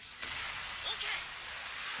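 The anime episode's soundtrack playing faintly in the background: a steady hiss of noise with a voice speaking quietly underneath.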